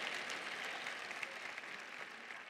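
Light audience applause that slowly fades away.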